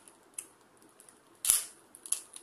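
Stiff clear plastic packaging handled in the hands: a faint click, then one sharp plastic snap about one and a half seconds in.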